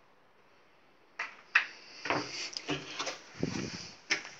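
Cupboard door being handled: two sharp clicks about a second in, then a run of knocks and rustles.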